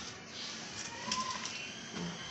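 Rustling of shredded packing and cloth bags as hands dig through a cardboard box, with a short single tone about a second in.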